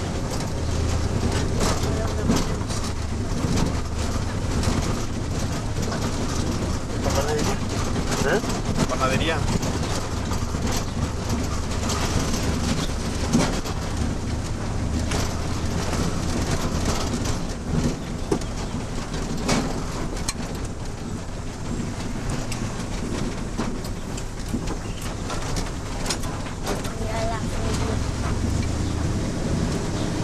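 Car engine and road noise heard from inside the cabin while driving slowly, a steady low drone whose pitch shifts a few times.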